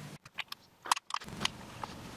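Plastic LEGO bricks clicking and tapping as they are handled and pressed onto the model: a brief dropout, then about six sharp, separate clicks.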